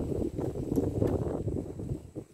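Wind buffeting the microphone: a low rumble that starts suddenly and dies away near the end.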